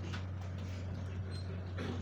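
A steady low hum fills a room, with faint shuffling and murmuring from a standing crowd and a voice starting up near the end.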